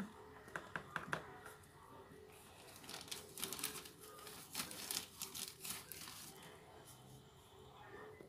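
Potting soil being scooped and added to a plastic plant pot: faint, scattered short scrapes and ticks, busiest about three to six seconds in.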